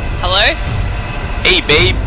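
Steady low rumble of street background noise, with a man's voice speaking briefly twice over it.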